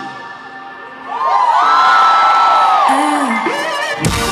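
Audience screaming and cheering while the band drops out, with quiet sustained music underneath. About a second in, several high cries rise together into one long high scream that falls away, followed by a shorter lower shout.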